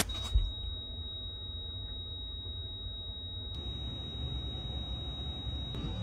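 A single high-pitched electronic tone held steady without a break: a heart monitor's flatline, marking life support cut off.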